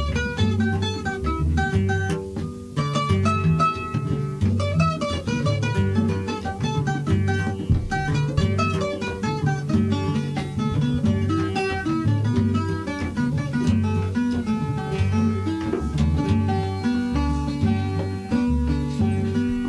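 Cuban son music without singing: a tres cubano picks quick melodic runs over acoustic guitar and a steady bass line.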